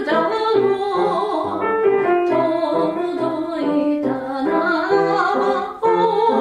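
A soprano singing a Japanese song with piano accompaniment.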